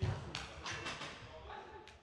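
Faint background voices of players, with a few soft knocks, fading out at the end.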